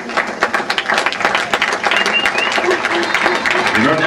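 Audience applauding, many hands clapping densely and steadily, with a few voices heard over it.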